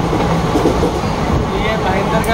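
Passenger train running at speed, heard from inside the coach: a steady rumble of wheels and carriage, heaviest in the bass.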